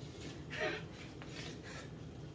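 A man's short wordless vocal sound, a brief falling 'uh', about half a second in, over faint handling noise.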